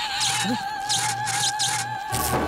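Eerie film background score: a single held high tone over a low hum that comes and goes, with four short hissing bursts.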